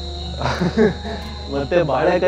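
Crickets trilling steadily as one unbroken high note, with a person's voice speaking in short pieces over it.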